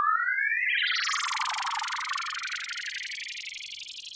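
Cartoon sound effect of a ball thrown high up into the sky and out of sight: a rising synthesized whistle in the first half-second, then a shimmering, twinkling wash that slowly fades away.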